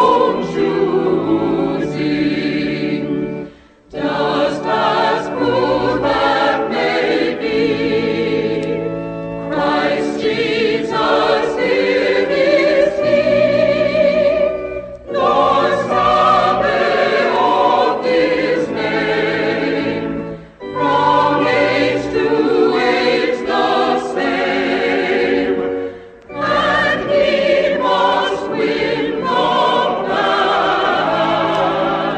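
A choir singing a hymn in sustained phrases, with short breaks between phrases every five or six seconds.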